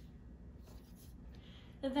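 A few faint, short scratching noises, then a voice begins speaking right at the end.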